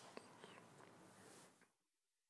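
Near silence: faint room tone that cuts out to complete silence about a second and a half in.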